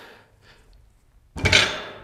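A loaded barbell with bumper plates set down on a rubber gym floor about a second and a half in: one heavy thud that dies away within half a second.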